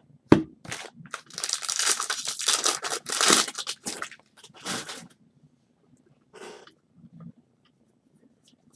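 Foil wrapper of a baseball card pack being torn open and crinkled: a sharp knock first, then about three seconds of dense crackling, then two shorter rustles.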